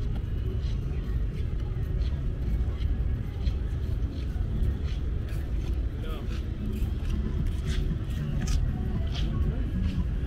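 Outdoor walking ambience: a steady low rumble with indistinct voices of passers-by and scattered light clicks, more of them in the second half.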